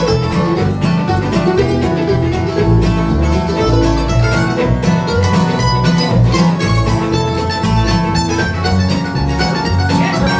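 Bluegrass band playing an instrumental break with no singing: mandolin and fiddle over strummed acoustic guitar and an upright bass keeping a steady beat.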